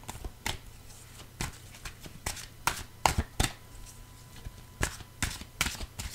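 A deck of oracle cards being shuffled by hand: irregular snaps and taps of the cards, a dozen or so spread unevenly over several seconds.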